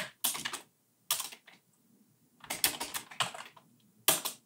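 Computer keyboard typing: quick runs of keystrokes in three bursts separated by short pauses, as short lines of code are keyed in.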